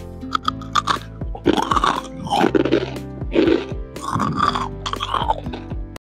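Crispy deep-fried potato strips being bitten and chewed: loud crunches that come roughly once a second, over soft background music.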